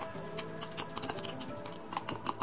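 Seasoned minced chicken being mixed in a bowl: a quick, uneven run of small wet clicks and pats. Soft background music plays underneath.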